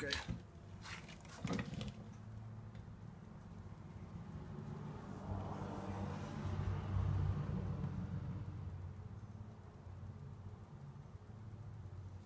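A vehicle passing by: a low rumble that builds about four seconds in, is loudest in the middle and fades away, over a faint steady hum.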